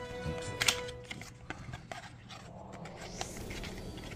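Cardboard soap box and its paper sleeve being handled and opened by hand: scattered rustles, scrapes and light taps, the sharpest about three-quarters of a second in. A steady background music tone runs under it and stops about a second in.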